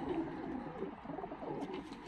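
Racing pigeons in a loft cooing, low wavering coos going on steadily.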